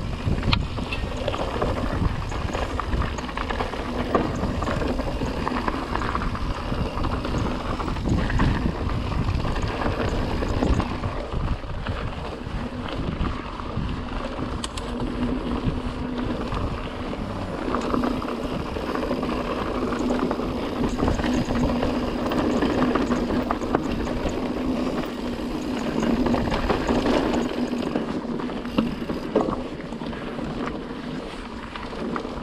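Pivot Trail 429 mountain bike riding over loose, rocky dirt singletrack: steady wind rush on the microphone, with tyres crunching on stones and the bike clattering over bumps.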